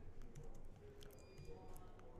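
Faint computer keyboard typing: a scattering of separate, irregular key clicks.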